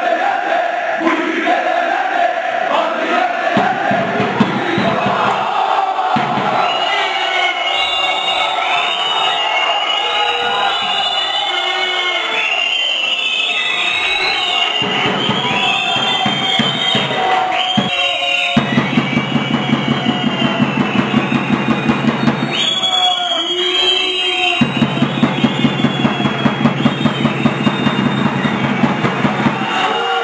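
Football supporters chanting and singing together in the stands, with a drum beating a quick steady rhythm through the second half.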